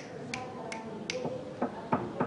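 Fingers snapping, a sharp click about every third of a second, followed in the second half by lower, duller knocks.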